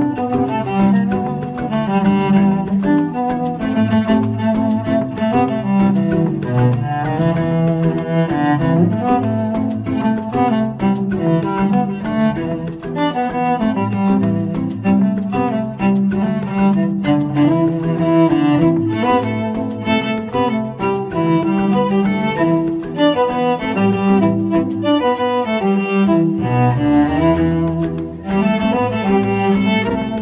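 Instrumental cover of a pop song played on bowed cellos: a moving melody over lower sustained notes, with no singing.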